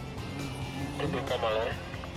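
Onlookers' voices with music in the background; a voice rises and falls about a second in.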